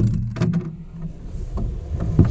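A sharp knock at the start, then a cluster of knocks and splashes about half a second in, as a big blue catfish is scooped into a long-handled landing net at the side of a jon boat.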